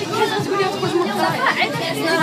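Several people talking at once: overlapping chatter of voices in a group.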